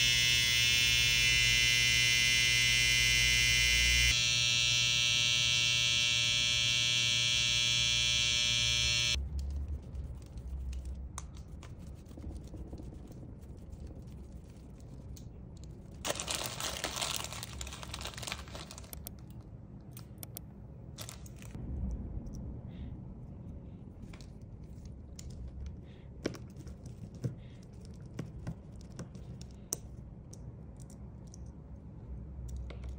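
A Babyliss Skeleton FX hair trimmer, its cam follower replaced a few months earlier, runs with a steady buzz and is switched off about nine seconds in. Quieter handling clicks and a rustle follow.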